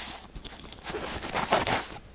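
Kinetic sand and a white paper tube handled close to the microphone: a run of soft crunches and rustles with a few sharp clicks, loudest about one and a half seconds in.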